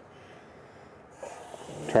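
RV kitchen faucet opened on the hot side: after a second of quiet, water starts running into the sink as a growing hiss. Water coming from the hot side is the sign that the water heater tank is full.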